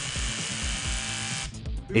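Bosch GBH 18V-EC cordless rotary hammer with brushless motor drilling into concrete, a steady drilling noise that cuts off about one and a half seconds in.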